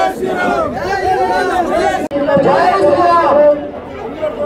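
A crowd of many voices chanting together in a repeated phrase. It breaks off for an instant about halfway through and then goes on.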